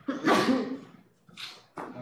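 A man's single loud, harsh cough-like outburst into his hand, followed by a short hiss of breath about a second and a half in.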